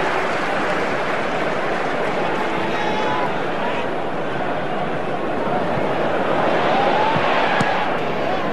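Football stadium crowd noise: a steady din of many spectators' voices.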